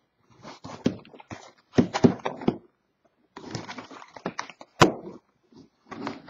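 A cardboard box of trading cards is handled and turned over in the hands: rustling and light knocks come in short clusters with brief pauses, and a sharp click about five seconds in.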